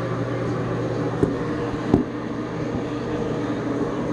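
A steady low hum, with two short knocks about one and two seconds in.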